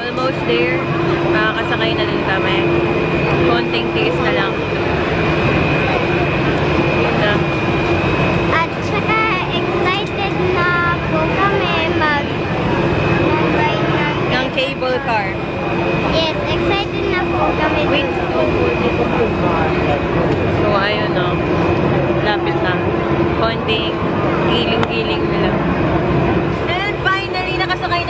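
Crowd chatter: many people talking at once in a queue, over a steady mechanical hum with a thin high whine that runs unbroken throughout.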